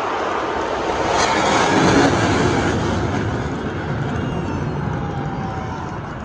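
Jet aircraft flyover: a swelling jet roar with a deep rumble that peaks about two seconds in as the plane passes overhead, then slowly fades.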